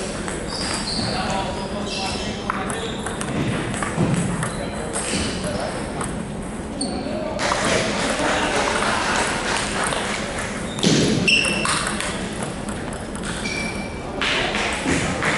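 Table tennis rally: the celluloid ball clicking off the table and the paddles in a run of sharp ticks, over a murmur of voices in a large gym hall.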